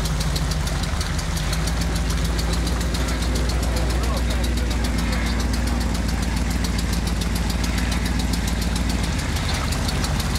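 Mud truck's engine running steadily at low revs, with a fast even pulse, as the truck wades through deep swamp water.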